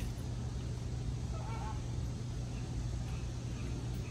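A steady low hum with one faint, short bird call, a honk, about a second and a half in.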